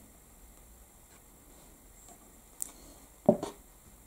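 Quiet room tone with a faint tick about two and a half seconds in and a short knock just after three seconds, as a small plastic dropper bottle of alcohol ink is handled and put down on the table.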